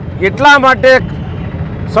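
A man speaking briefly, then a pause of about a second filled with steady background noise before the speech goes on.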